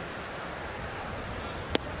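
Ballpark crowd murmur, then one sharp pop near the end: the pitch smacking into the catcher's mitt on a swinging strike.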